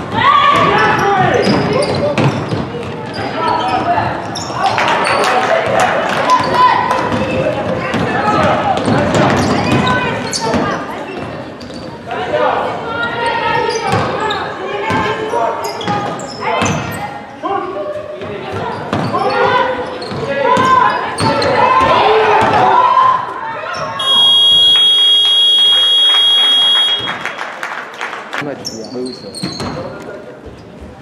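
Basketball being dribbled on a wooden sports-hall floor amid voices calling out, all echoing in the large hall. About 24 seconds in, a scoreboard buzzer sounds steadily for about three seconds, marking the end of the first quarter.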